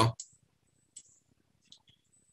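A word of speech ends just after the start, then a few faint, sparse clicks follow, about a second in and near the end. These are the clicks of a computer mouse used to draw annotations on a screen.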